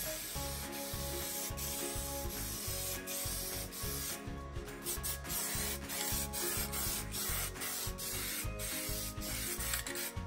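Aerosol can of SEM paint hissing as it is sprayed onto a leather seat cover, with short breaks between passes, over background music with a steady beat.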